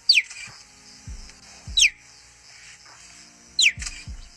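Cheetah chirping: three short, high, bird-like chirps, each falling in pitch, about two seconds apart. Background music plays beneath them.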